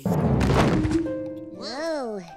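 A sudden loud thump with a noisy rush lasting about a second, as the puppets lurch together. It is followed near the end by a short voice-like sound that rises and falls in pitch.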